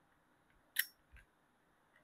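Metal click of a Smith & Wesson air revolver's cylinder being released and swung out of the frame: one sharp click a little under a second in, then a fainter one.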